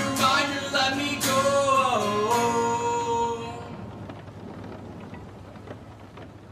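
Male voice singing over a strummed acoustic guitar, ending on a held note about three and a half seconds in. The final guitar chord then rings on and fades away, closing the song.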